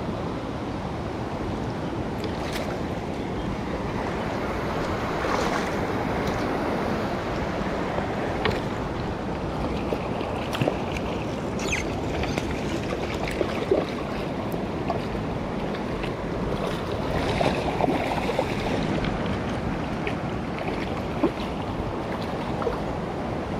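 Shallow rocky stream running steadily over stones, with a few faint clicks and knocks scattered through it.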